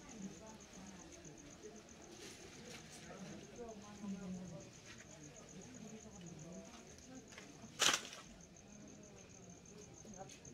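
Faint murmur of a gathered crowd's voices, under a steady, evenly pulsing high trill. A single sharp crack sounds about eight seconds in.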